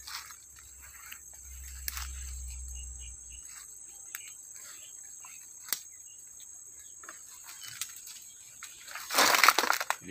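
Footsteps and rustling through dense undergrowth, with scattered small cracks of twigs and leaves. A louder brush of vegetation comes about nine seconds in.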